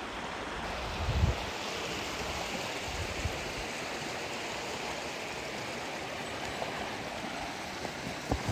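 Mountain creek running over rocks: a steady, even rush of water. Low bumps on the microphone come about a second in and again around three seconds.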